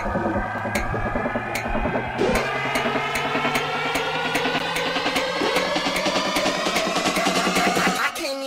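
Electronic dance music build-up: drum hits come faster and faster over synth tones that rise steadily in pitch.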